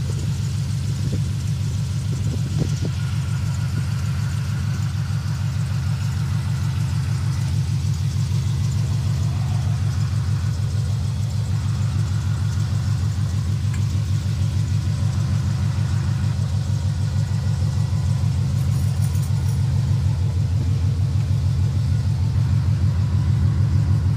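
2000 Chevrolet Camaro Z28's 5.7-litre (350 ci) LS1 V8, fitted with Hooker headers and Borla mufflers, idling with a steady, even low exhaust rumble. It grows a little louder near the end.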